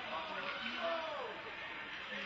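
Indistinct voices calling out across an ice hockey rink over a steady background hiss.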